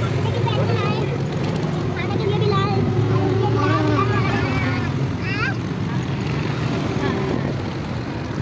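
Auto-rickshaw engine running steadily with road noise while riding in traffic, a continuous low drone. Voices talk over it for a few seconds in the middle.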